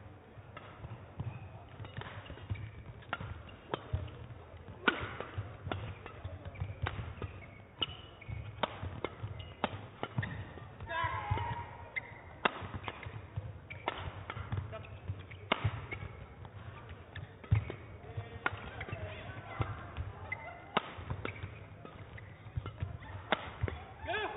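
Long badminton rally: rackets striking the shuttlecock about once a second, sharp cracks between thuds of players' feet on the court. Voices call out briefly around the middle of the rally.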